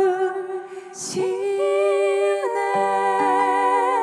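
Two women's voices sing long held notes in harmony with vibrato, almost unaccompanied, breaking briefly about a second in. Low sustained accompanying notes come in under them near the end.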